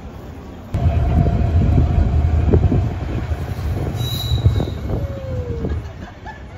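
A train passing close by, coming in suddenly about a second in with a heavy low rumble. A steady high wheel squeal runs over it for a couple of seconds, and a falling squeal comes near the end.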